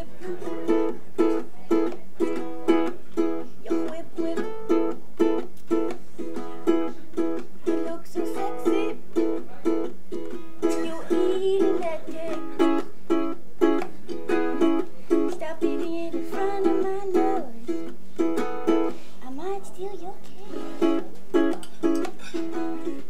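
Ukulele strummed in a steady rhythm, about two strums a second, with a woman singing along in places.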